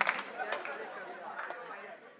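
Low audience chatter in a hall, with scattered faint voices and a few clicks, fading away.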